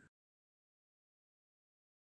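Silence: the sound track is empty, with no kneading or room sound audible.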